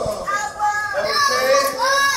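Several children's voices talking and calling out at once, overlapping, in a large, echoing indoor pool hall.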